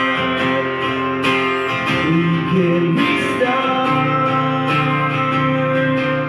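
Acoustic-electric guitar strummed in a steady rhythm, with the chord changing about two-thirds of the way through.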